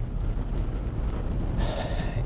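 Steady low rumble of road and engine noise inside a moving police patrol car's cabin.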